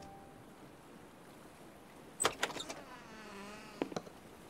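Wooden door opening: a sharp click of the latch, a few soft knocks, then a faint wavering creak lasting about a second and a last click near the end.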